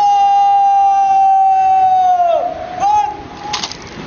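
Bugle call: a long, loud, steady held note that sags and falls away after about two and a half seconds. A second, shorter note follows, scooping up into the same pitch. A few sharp clicks come near the end.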